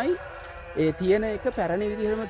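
A man talking, with a brief pause just after the start; speech only.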